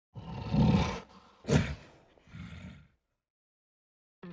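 Gorilla roar sound effect for the channel's intro logo, in three bursts: a long loud roar, a short sharp one about one and a half seconds in, and a quieter, shorter one near three seconds.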